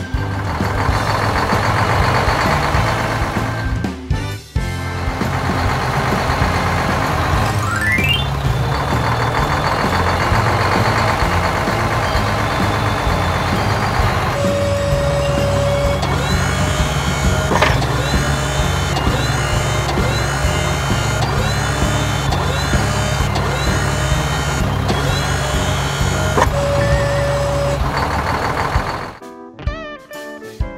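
Cartoon truck engine running under background music, with a rising whine about eight seconds in. About halfway through, a steady low engine hum takes over, with a repeating pattern on top and a long held tone shortly after the change and again near the end.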